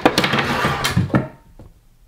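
Rustling and knocking of things being handled as a small package is reached for and picked up, dying down about halfway through.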